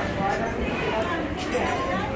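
Crowd chatter of many shoppers talking at once in a busy indoor market hall, overlapping voices with no single clear speaker. A couple of brief clicks stand out, the clearest about one and a half seconds in.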